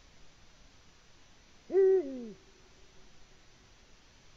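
Male Eurasian eagle owl giving a single deep hoot about halfway through, held on one pitch and then falling away at the end.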